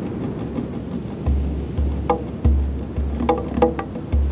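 Tombak (Persian goblet drum) played by hand in a sparse, improvised rhythm that starts about a second in. Deep, sustained bass strokes alternate with sharp, ringing strokes near the rim.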